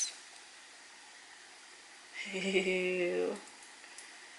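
Quiet room tone, then about two seconds in a woman's held vocal sound, one steady note lasting about a second, that ends in a short laugh.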